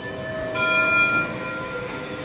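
Schindler 3300 AP elevator chime, a single bell-like tone that sounds about half a second in and fades over about a second, over the steady hum of the car and lobby.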